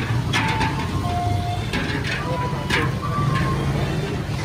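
Metal milk bowls spun and shoved by hand over a tray of wet crushed ice: several sharp swishing scrapes, with a few short pitched tones among them, over a steady low hum.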